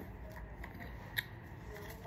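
Faint handling noise with a single short click a little over a second in.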